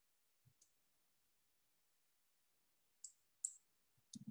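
Near silence broken by a few faint, sharp clicks from a computer mouse: a pair about half a second in and two more close together near the end.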